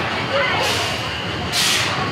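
A sharp hiss of compressed air about one and a half seconds in, with a fainter one before it, from a Big Thunder Mountain Railroad mine train as it pulls out of the station, with faint voices around.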